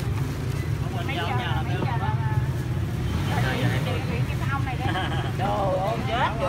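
Steady low drone of engine traffic, with people talking over it.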